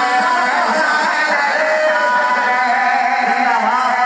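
A solo voice singing an Urdu couplet (sher) in long, drawn-out notes that bend up and down in pitch, in the sung style of poetry recitation.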